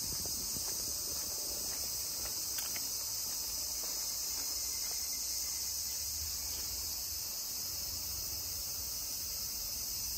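A steady, high-pitched chorus of insects chirring without a break, with faint low rumble from handling or wind underneath.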